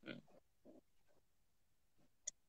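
Near silence, with a few faint short voice sounds in the first second.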